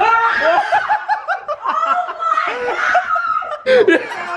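A woman laughing in a quick run of short, high-pitched bursts.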